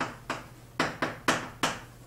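Chalk on a chalkboard as characters are written: about six sharp taps and short scratches of the chalk stick against the board, irregularly spaced.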